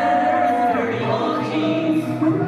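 Live pop concert music heard from the audience: a male vocalist holds a long sung note that ends about three-quarters of a second in, over the band's keyboard and drum backing.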